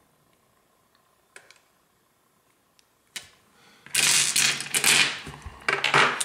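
Polished tumbled stones clattering against one another as a hand rummages through a pile of them: a few faint clicks, then a dense rattle of many small clicks lasting about a second and a half, and a shorter one near the end.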